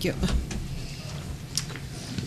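A man's voice finishing "thank you", then low meeting-room noise with one brief click about one and a half seconds in.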